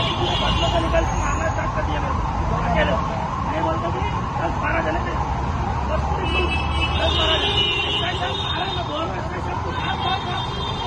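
Raised, agitated men's voices arguing close by over a steady rumble of street traffic.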